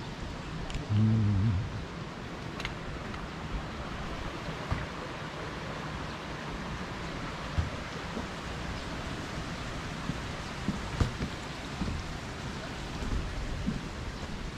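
Steady rain hiss with a low rumble underneath and scattered faint ticks of drops. A short low-pitched hum about a second in.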